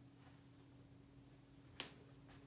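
Near silence with a low steady hum, broken near the end by one sharp click of a studded heeled pump stepping down.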